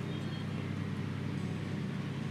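A steady low mechanical hum, even throughout, with no other sound standing out.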